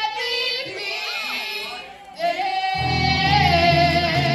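Two women singing a country-pop song live in close harmony, with a short break between phrases about two seconds in and then a long held note. Electric guitar accompaniment comes in strongly under it near the end.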